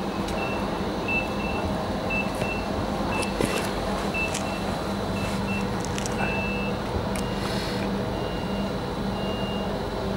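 TILO Stadler FLIRT electric train standing at the platform with a steady low hum from its onboard equipment, while a high electronic beep repeats in short, irregularly spaced pulses. A brief hiss sounds about seven seconds in.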